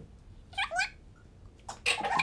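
A person's voice making two short, high-pitched squeals about half a second in. A click and the first of a burst of voices follow near the end.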